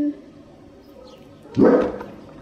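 A single short, loud dog bark about one and a half seconds in, after the tail end of a woman's hummed 'mm'.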